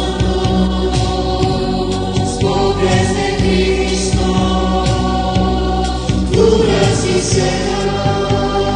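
A choir singing a Spanish-language Catholic hymn over instrumental accompaniment with sustained low bass notes.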